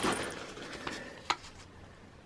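Rustling of a canvas gas-mask pouch and a folded paper instruction sheet being handled, fading away, with a single sharp click just over a second in.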